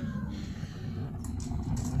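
Pellet stove burning with a steady low rumble, with a few light clicks in the second half.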